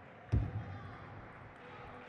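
Table tennis rally: one loud thud about a third of a second in, followed by fainter knocks of play.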